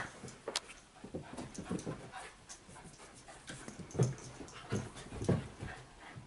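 Two puppies play-fighting: breathing hard, scuffling and giving short low grunts in spurts. The grunts come strongest from about four seconds in.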